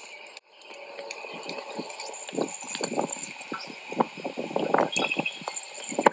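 Water dripping and splattering in quick, irregular drops from a leaking Febco 765 backflow preventer (pressure vacuum breaker). The owner puts the leak down to a failed internal rubber O-ring or washer-style seal.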